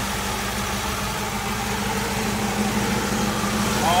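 1968 Chevrolet Camaro's numbers-matching 327 V8 idling steadily, purring like a kitten.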